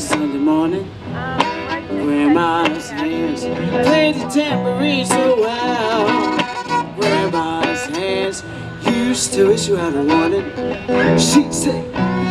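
Violin playing a solo line with wavering, sliding notes over a guitar accompaniment, an instrumental break in a soul-blues song. A voice comes in singing near the end.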